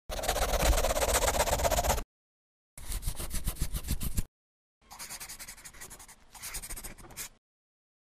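Marker pen scribbling in quick strokes, in three bursts of one to two seconds with dead silence between them; the last burst is quieter.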